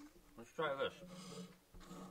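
A single short spoken word, then a quiet stretch with a faint steady hum.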